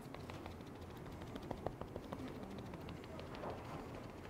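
Quiet room tone with faint, irregular small taps and clicks as a cushion-foundation puff is dabbed on the cheek.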